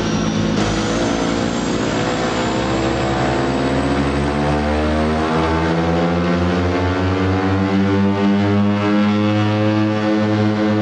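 DHC-6 Twin Otter's twin PT6A turboprop engines and propellers running, heard from inside the aircraft, their pitch rising slowly and steadily as the power comes up.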